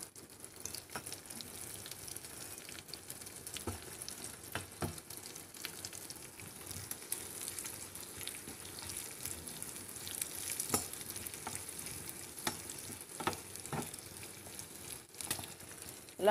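Hot oil sizzling steadily in a small steel pan as a tempering of chana dal, garlic and dried red chillies fries over a gas flame. A spoon stirs it, clicking against the pan several times.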